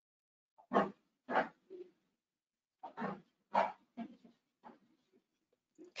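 A dog barking over the call audio: two runs of short barks about half a second apart, the loudest near the start.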